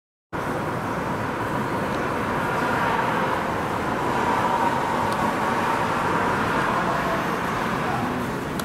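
Steady outdoor background noise, an even rushing with a faint constant hum running through it.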